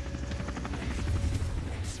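Light helicopter running on the ground with its main rotor turning: a steady rapid rotor chop over a low engine hum.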